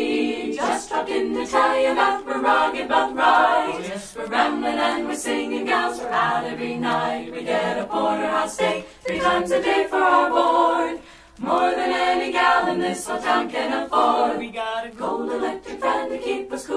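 An unaccompanied vocal group singing in harmony, with no instruments, in phrases that pause briefly now and then.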